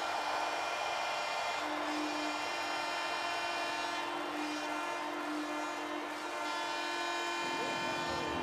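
Hockey arena goal horn sounding steadily over a cheering crowd, signalling a home-team goal; the horn cuts off about seven and a half seconds in.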